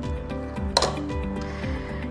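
Background music with a steady beat, and a single sharp clink of cutlery against a plate about three-quarters of a second in.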